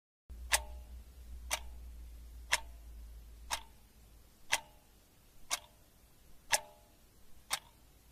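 Pendulum wall clock ticking steadily, one tick a second, eight ticks in all. A faint low hum sits under the first half.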